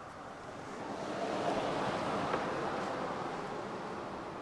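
A rushing outdoor noise that swells about a second in and then slowly fades.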